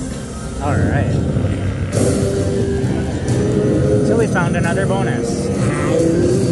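Electronic slot machine music and sound effects: short chiming notes, a sudden swell about two seconds in, and warbling sweeps as the reels land bonus orbs and the Power Link feature is triggered.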